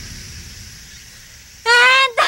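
A young woman cries out in distress, a loud, high-pitched, drawn-out "Ah!" starting near the end, as the start of calling a collapsed companion's name. Before the cry there is only a faint, steady background hiss.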